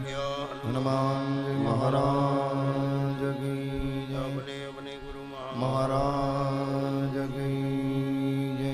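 Devotional mantra chanting in long held sung notes over a steady low drone, the pitch moving to a new note every second or two and dropping softer for a moment near the middle.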